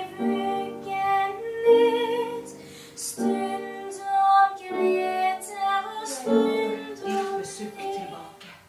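A young girl singing a slow lullaby to a doll, in phrases of long held notes with short breaks between them.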